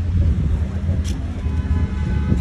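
Wind buffeting the microphone: a steady, loud low rumble, with faint voices of people talking in the background.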